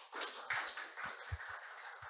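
A small audience clapping, a soft even patter of many hands that thins out near the end.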